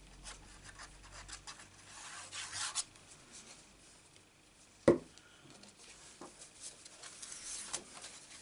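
Paper and cardstock being handled and rubbed over a craft mat, with soft scratchy rustling strokes, and one sharp knock about five seconds in.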